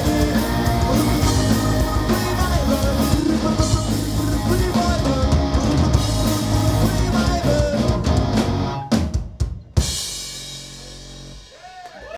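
Punk rock band playing live: pounding drum kit with distorted electric guitars and bass. About nine seconds in the band stops on a few final hits, and the guitars ring on, fading.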